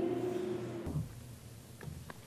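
Church choir holding the final chord of an anthem, released a little under a second in. Faint room noise and a few soft knocks follow.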